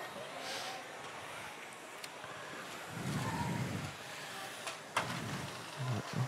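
Faint background sound of a robotics competition arena during a match, with a low rumble about three seconds in and a couple of faint knocks.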